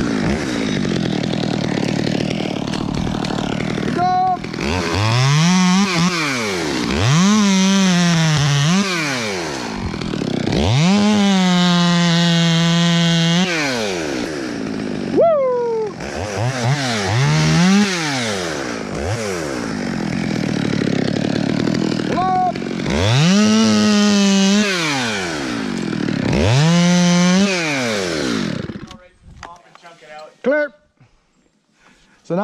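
Two-stroke chainsaw revved to full throttle about six times, each rev rising, holding and falling back to idle, as small limbs are snap-cut. It goes quiet shortly before the end.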